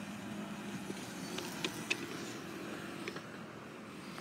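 Car idling, heard from inside the cabin as a steady low hum, with a few light clicks partway through.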